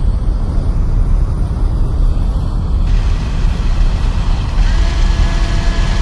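Logo-animation sound design: a deep, steady rumble with a thin high tone above it. Near the end, held tones join in and the sound swells toward the reveal.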